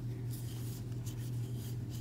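Soft, faint rustling of cotton yarn drawn through stitches by a wooden crochet hook as single crochet stitches are worked, over a steady low hum.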